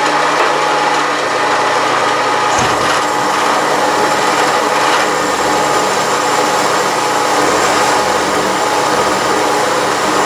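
Bridgeport milling machine spindle running with a quarter-inch solid carbide four-flute end mill cutting down through a tool-steel wrench, enlarging a pilot hole: a steady machine whine. The low end of the sound shifts slightly about two and a half seconds in. The carbide goes through the hardened steel easily.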